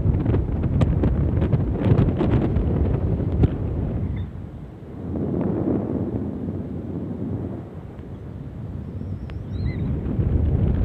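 Wind buffeting a phone's microphone: a loud, low, gusty rumble that eases off about four to five seconds in and again around eight seconds. A few sharp clicks sound in the first three and a half seconds.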